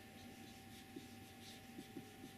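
Whiteboard marker writing letters on a whiteboard: a run of faint, short rubbing strokes.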